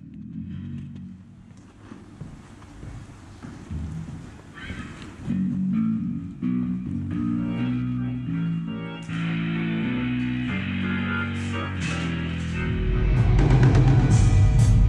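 Band music: bass and electric guitar play a line of low notes, and the full band with drums comes in loudly near the end.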